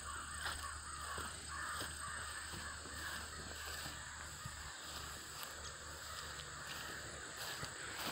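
Faint, steady outdoor background of animal calls: a harsh calling in the mid range, with a thin steady high hum above it.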